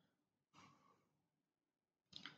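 Near silence, with one faint breath about half a second in.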